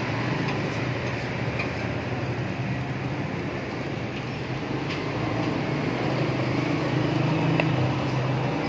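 Steady background rumble and hiss with a low hum, swelling slightly in the second half, broken by a few faint light clicks.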